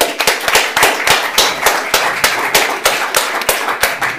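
Audience applauding: many hands clapping in a dense, steady stream.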